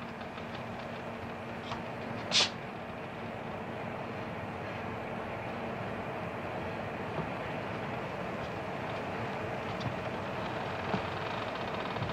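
Steady machinery drone of a ship's interior, with faint steady hum tones under it. About two and a half seconds in there is one short, sharp burst of noise, and a few faint clicks follow later.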